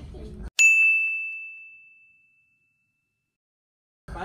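A single bright bell-like ding sound effect, struck once about half a second in and ringing out, fading over about two seconds. The room sound is muted around it, leaving dead silence.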